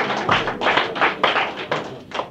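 Audience clapping: a brisk round of many individual hand claps, thinning out near the end.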